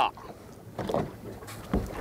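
Water lapping against the hull of a small boat on open water, low and uneven, with a short dull knock about three-quarters of the way through.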